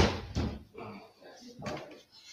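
Clunks and knocks of a fallen burning log being put back into the fireplace: one sharp, loud clunk at the start, then a few lighter knocks.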